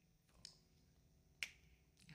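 Near silence broken by one sharp finger snap about one and a half seconds in, with a faint click shortly before it.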